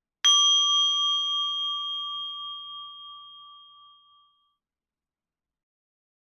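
A single chime struck once, ringing with a slight waver and fading away over about four seconds, marking the end of a silent reflection period.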